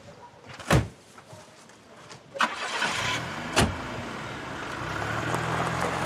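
A car door shuts, then a car engine starts about two seconds in and runs steadily, with a second door shutting a second later, as the car drives off over gravel.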